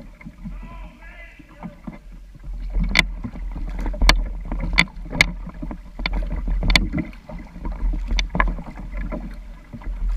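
Paddling sounds picked up through the hull of a Sun Dolphin Aruba 10 plastic kayak: a steady low rumble of water along the hull. From about three seconds in come a series of sharp, irregular knocks and splashes, roughly one or two a second.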